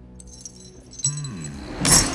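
A jeweled necklace jingling as it is handled, ending in a bright clatter near the end, over held notes of film score.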